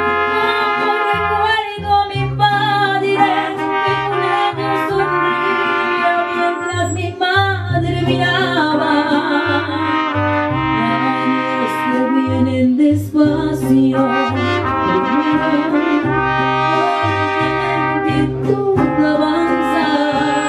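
Mariachi band playing, with trumpets carrying long held melody notes over strummed guitars and a plucked bass line that steps from note to note in rhythm.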